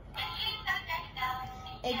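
Electronic toy piggy bank's built-in speaker playing a synthesized tune, started by pressing its music button; the melody begins a fraction of a second in, with held electronic notes.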